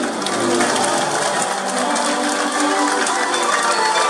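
Audience applauding as a live song ends, with music still playing faintly underneath.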